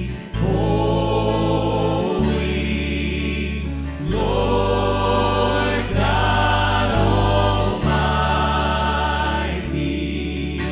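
A worship team singing a gospel song together into microphones, over a steady bass line whose notes change about every two seconds.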